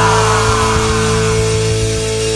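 Punk rock music: the band holds one loud sustained chord, with a falling pitch sweep sliding down through it.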